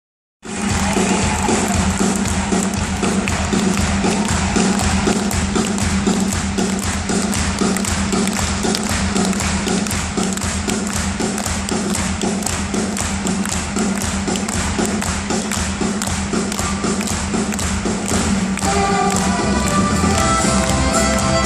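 Live folk-rock band playing a song's instrumental intro, recorded from the audience in a large hall: a steady thudding drum beat over a sustained low drone. A fiddle melody comes in near the end.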